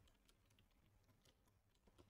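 Near silence, with very faint keystrokes on a computer keyboard.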